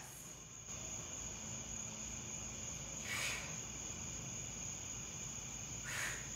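Quiet background with a steady high-pitched tone throughout, and one short hiss about three seconds in.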